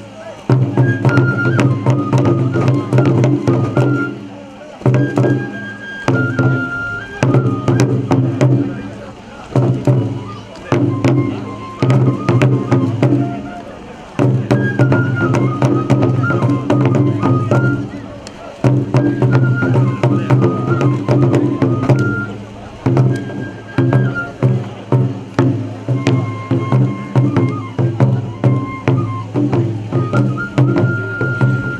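Kagura accompaniment: large taiko drums struck in rapid, continuous strokes under a high flute melody. The music comes in phrases broken by brief dips.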